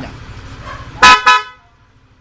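Yamaha Aerox scooter's horn sounding two short, loud beeps about a quarter second apart.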